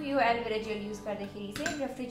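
Metal spoon scraping and clinking against a small glass bowl as it stirs a thick paste, with one sharper clink about one and a half seconds in.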